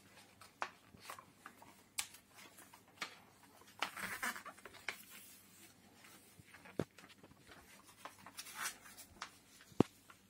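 Paper rustling and crinkling as a glossy magazine page and a sheet of junk mail are folded in half and creased by hand, with scattered soft clicks and one sharp tap near the end.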